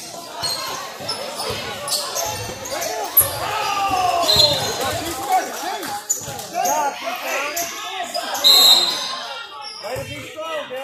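A basketball bouncing on a hardwood gym floor during play, repeated thumps echoing in a large hall, with shouting voices and two short high sneaker squeaks.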